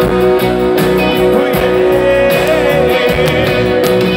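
Live rock band playing an instrumental passage: electric and acoustic guitars over a steady drum beat and cymbals, with a held lead line that bends in pitch about two and a half seconds in.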